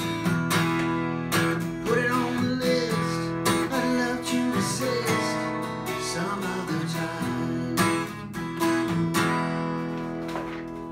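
Takamine twelve-string acoustic guitar strummed in chords, with strokes falling in a steady rhythm.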